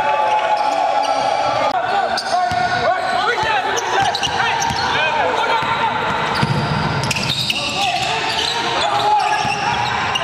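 Live indoor basketball game sound: a basketball bouncing on a hardwood court, sneakers squeaking in short chirps, and players shouting. All of it echoes in a large hall.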